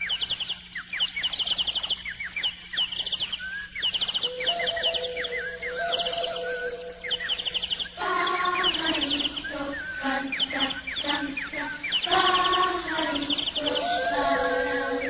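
Quick, repeated birdsong chirps, with instrumental music coming in about four seconds in and growing fuller from about eight seconds: the instrumental opening of a children's song.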